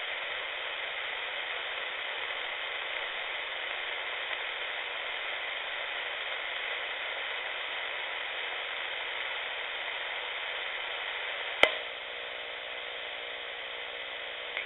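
Shortwave receiver tuned to the 40-metre AM band, its speaker giving a steady hiss of static with faint whistles. Near the end there is a sharp click, after which the hiss eases and steady tones come in, as the transmitter's carrier comes up on the frequency.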